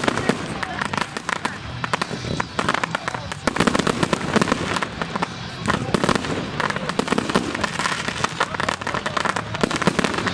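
Aerial fireworks in a finale barrage: a dense, unbroken run of bangs and cracks from bursting shells.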